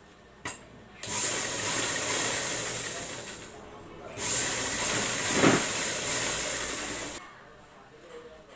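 Pioneer sewing machine stitching fabric in two runs, the first about two and a half seconds and the second about three seconds, with a short pause between them. A brief click comes just before the first run.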